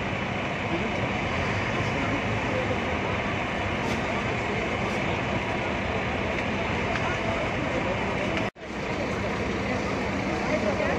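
Steady engine and traffic noise mixed with the chatter of a crowd of people. The sound drops out briefly about eight and a half seconds in.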